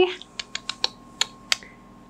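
A quick run of light, sharp clicks and taps, about half a dozen over a second and a half: hard, crunchy twice-baked biscotti being handled on a parchment-lined baking tray as one is picked out.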